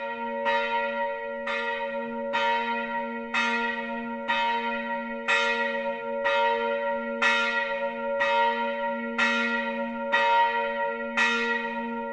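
A single church bell tolling about once a second at one unchanging pitch, each stroke ringing on into the next.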